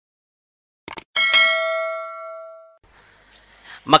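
A couple of quick mouse clicks, then a bell chime that rings out and fades over about a second and a half: a subscribe-button and notification-bell sound effect.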